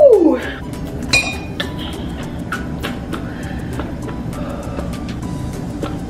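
Background music with a steady beat, and a single clink about a second in.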